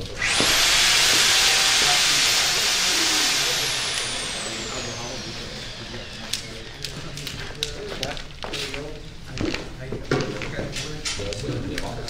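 A small high-speed motor starts with a loud hiss and runs for about three seconds. It then winds down, its high whine falling steadily in pitch over the next three seconds as the hiss fades.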